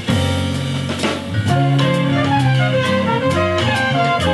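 A jazz sextet playing live: trumpet, tenor and alto saxophones, piano, bass and drum kit, with steady cymbal strikes under the horn and piano lines.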